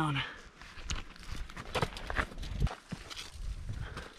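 Footsteps scuffing and crunching on dirt and rock while pushing through brush, with irregular small snaps and scrapes. A few low thumps come through in the middle and toward the end.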